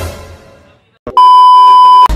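Edited-in sound effects: a sudden hit that fades away over about a second, then a loud, steady electronic beep lasting just under a second that stops abruptly.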